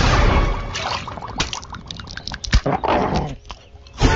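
Sound effects from an animated cartoon: a loud, deep blast at the very start, then a rapid run of short, sharp sounds that dies down a little after three seconds in.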